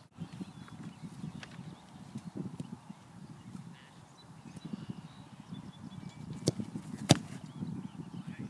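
A kicker's foot striking an American football off a tee: one sharp thud about seven seconds in, the loudest sound, with a smaller knock about half a second before it. A low, uneven rumbling noise runs underneath.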